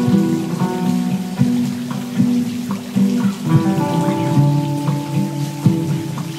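Acoustic guitar picking repeating arpeggios, layered over a loop of its own playing from a looper pedal, with many sharp string and pick clicks among the ringing notes.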